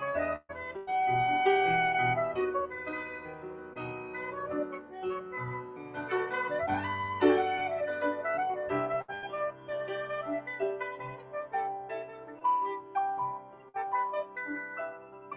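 Soprano saxophone playing a jazz melody of long held notes, with grand piano accompanying underneath; about seven seconds in the saxophone line bends up and down.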